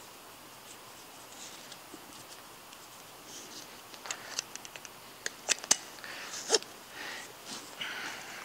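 Harness buckles and nylon webbing straps being handled and pulled snug: faint rustling at first, then a run of sharp clicks and rattles from about four seconds in.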